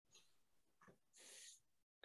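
Near silence: room tone, with a faint brief hiss a little over a second in.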